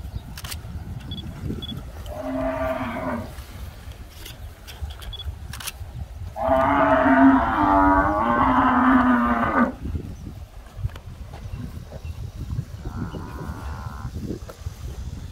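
Cattle mooing: a short moo about two seconds in, a long, louder moo lasting about three seconds midway, and a faint short moo near the end.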